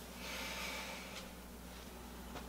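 A person's heavy breath out, a soft hiss lasting about a second.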